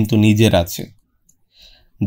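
A narrator's voice speaking for about the first second, then a pause, with a faint short sound effect near the end as the picture changes.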